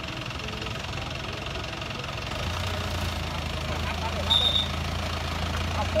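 A vehicle engine idling steadily, its low hum growing stronger about two and a half seconds in, under people talking. A short high tone sounds just after four seconds.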